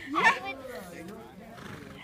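A horse whinnying: a sharp rising call about a quarter second in, trailing off into a lower wavering note that lasts over a second.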